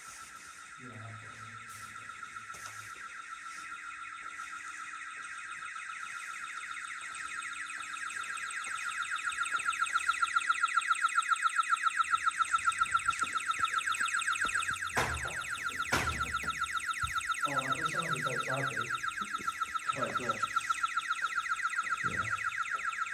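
A building's alarm sounder going off, set off by intruders: a steady high electronic tone pulsing rapidly, about five pulses a second, that grows louder over the first half. Two sharp knocks come about three quarters of the way in.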